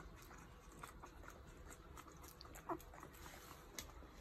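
Newborn puppies suckling at their mother: faint, scattered wet clicks, with one short squeak from a puppy about two and a half seconds in.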